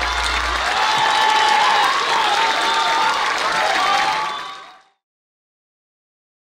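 Audience applauding and cheering, clapping mixed with shouting voices, fading out to silence near the end.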